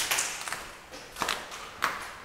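Footsteps climbing stone stairs: a hard step roughly every half second, each with a short echo.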